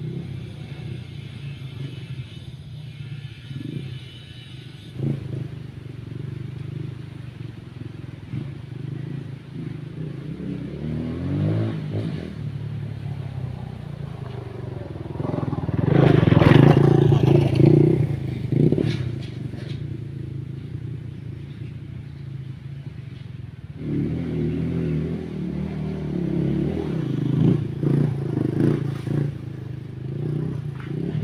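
Dirt bike engines running on an off-road trail, the sound rising and falling as the bikes rev and ride past. The revs climb a little before the middle, the loudest pass comes just past the middle, and the engines grow louder again for the last few seconds.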